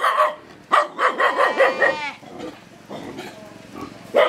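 A dog barking several times in quick succession, the last call falling in pitch, about two seconds in.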